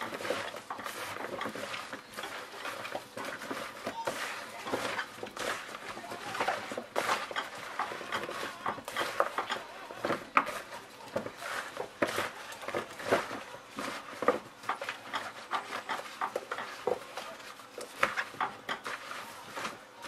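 Potato chunks being tossed and mixed by a plastic-gloved hand in a plastic bowl: a steady run of soft, irregular rustling and patting strokes.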